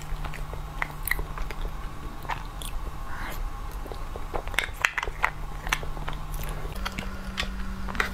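Close-miked eating sounds: wet clicks and smacks of the mouth as spoonfuls of a soft dessert are taken from a spoon and chewed, with irregular short clicks throughout.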